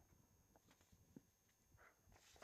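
Near silence, with faint pen strokes and small taps on paper; the clearest tick comes a little over a second in.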